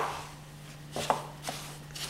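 Small wooden spatula knocking and scraping against a glass mixing bowl while dry cookie ingredients are stirred: a sharp knock at the start, then a few softer taps about a second in.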